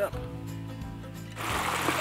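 Background music, joined about two-thirds of the way in by the steady sound of a shallow stream running over stones.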